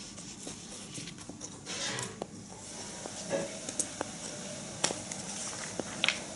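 Knife blade sliding and scraping along a pine block in slicing strokes, with a few light clicks of steel against the wood.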